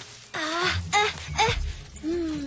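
A cartoon character's wordless vocal sounds: three short moans or grunts with wavering pitch. A low rumble comes in underneath about half a second in.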